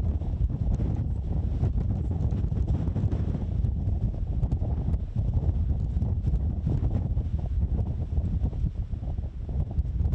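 Wind buffeting a microphone: a steady low rumble with no other clear sound.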